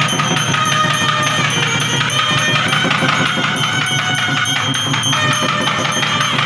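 Temple percussion music: fast, steady drumming with jingling percussion, and steady ringing tones over it from a hand bell ringing during the lamp worship.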